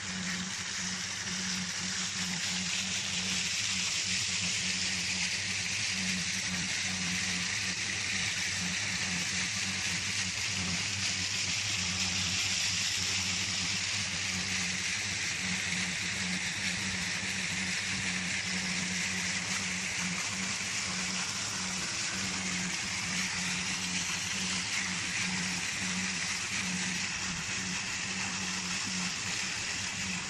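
A pump set running steadily, with water pouring out in a constant rush over a low, even hum.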